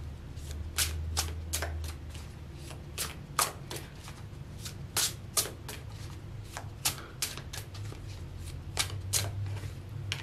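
A deck of tarot cards being shuffled by hand: short crisp snaps and riffles come irregularly, one or two a second.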